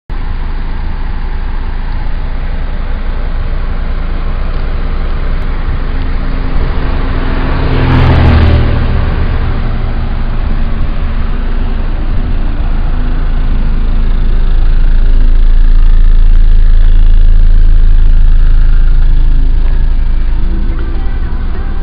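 Honda Civic EG8 sedan's engine idling with a steady low rumble. About eight seconds in, a louder surge rises and dies away, and the sound grows louder again for the last few seconds.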